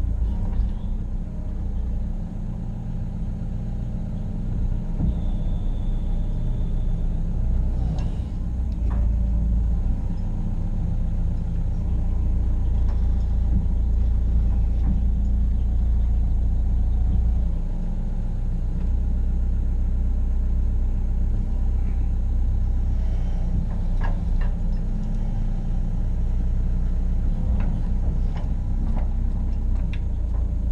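Tracked excavator's diesel engine running steadily under load as the machine travels, heard from inside the operator's cab, with a few faint knocks.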